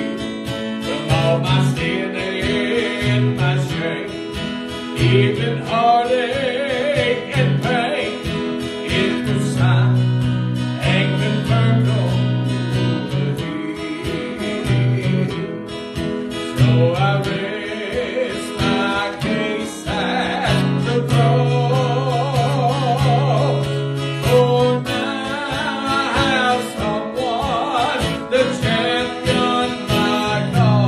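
A man singing a slow gospel song to his own strummed acoustic guitar, his voice holding long notes with a slight waver.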